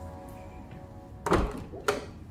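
Interior panel door's lever handle and latch being worked and the door pulled open: two sharp thunks about half a second apart, the first the louder.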